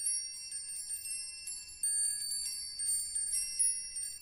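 High, bright chimes tinkling in a loose, irregular run of many strikes, each note ringing on, with nothing lower beneath them: the opening of a song's intro.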